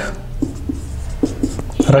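Marker pen writing on a whiteboard: a run of short, separate strokes as words are written out.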